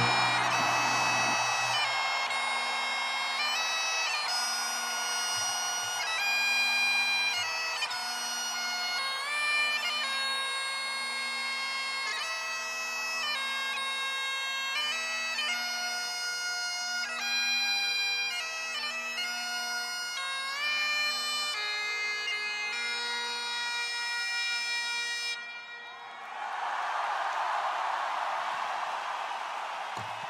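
Solo Highland bagpipes playing a melody over a steady drone, after the band's drums and bass drop out about a second in. The pipes stop about four seconds before the end and the arena crowd cheers.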